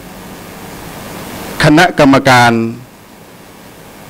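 A man speaking Thai into podium microphones, saying one word, 'committee', about one and a half seconds in. A steady hiss lies under it and grows louder before he speaks.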